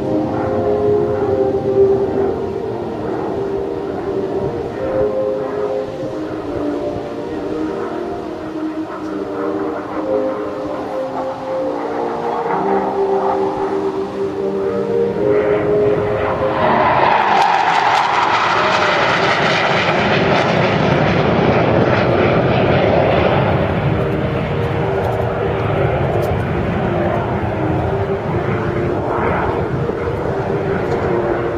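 Hawker Hunter F58A jet's Rolls-Royce Avon turbojet in flight: a whining tone that shifts in pitch while the jet is distant, then growing much louder and fuller about sixteen seconds in as it passes closest, easing off slightly toward the end.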